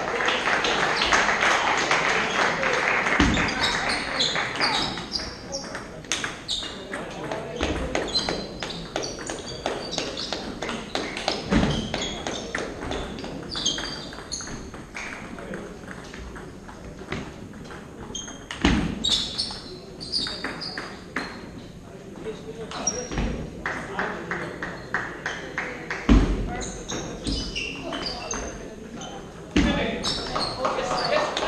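Table tennis balls clicking sharply and repeatedly off bats and table, with a few low thumps and voices talking in the background.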